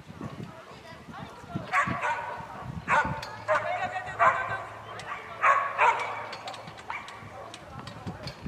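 A dog barking repeatedly, about six short barks roughly a second apart.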